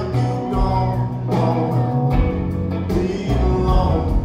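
Live rock band playing: electric guitars over bass and drums, with a steady beat of drum hits, heard from the audience in a theatre.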